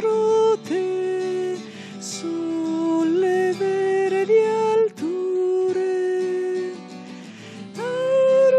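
A church hymn sung by a single voice in long held notes, with a steady instrumental accompaniment underneath.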